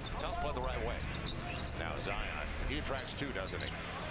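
NBA game broadcast playing at low volume: a commentator talking over steady arena crowd noise, with a basketball bouncing on the hardwood court.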